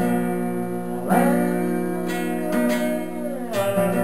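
Acoustic guitar strummed, its chords left to ring. There is a fresh strum about a second in and another near the end.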